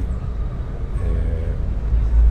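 Steady low rumble of background noise in an open-air press scrum, with a faint voice in the background about a second in.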